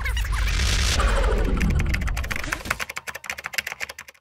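End-card sound effect: a deep low boom with a falling sweep, lasting about two and a half seconds, then a run of quick ticks that fade away near the end.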